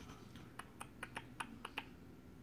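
Faint, quick light clicks or taps, about eight in just over a second, starting about half a second in.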